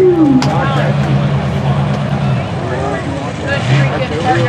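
Mega mud truck's engine running with a steady low drone that eases off about halfway through and picks up again near the end, with voices over it.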